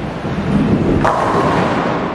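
Bowling ball rolling down a wooden lane with a low rumble, then hitting the pins about a second in with a sharp crack and a ringing clatter of pins.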